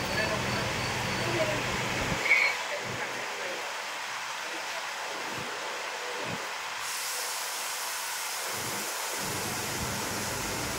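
Steady hiss of aquarium aeration and water flow: air bubbles and filter water running.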